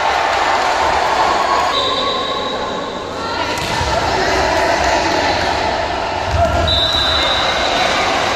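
Spectators shouting and cheering during a volleyball rally, echoing in a large indoor hall, with dull thuds of the ball being played. A high held tone cuts through twice.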